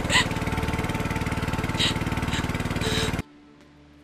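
Small boat engine running steadily with a fast, even pulse. It cuts off abruptly a little after three seconds in, leaving faint room tone with a few small ticks.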